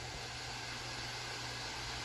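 Vinegar poured in a stream from a bottle onto baking soda in a plastic tub, the mixture fizzing with a steady hiss as it foams.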